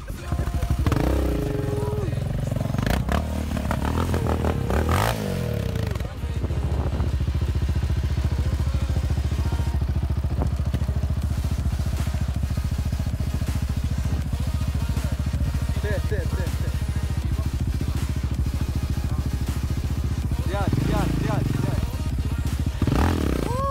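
Yamaha Raptor quad's single-cylinder four-stroke engine running. It is revved unevenly for the first few seconds, then idles with a fast, steady beat, and is revved again near the end as the riders set off.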